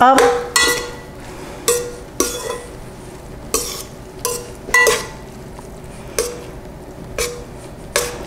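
Metal tongs mixing escarole and beans in a stainless steel pan, clinking against the pan's side about nine times at an uneven pace, each knock leaving a short metallic ring.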